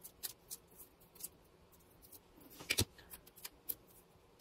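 Light clicks and small snips of craft tools being handled on a cutting mat, with one sharper knock about three seconds in.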